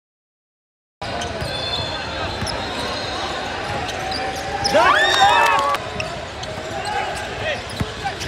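Basketball game sound in a gym, starting about a second in: a ball dribbling on the floor over a steady hubbub of voices. About halfway through it rises to a louder burst of high sliding squeaks and shouts.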